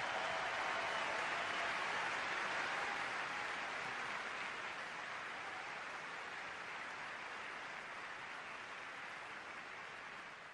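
Audience applauding, a steady clapping that slowly dies down.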